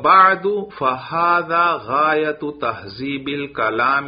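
A man reciting the Arabic base text (matn) in a chanted, sing-song intonation, with long held, gliding syllables.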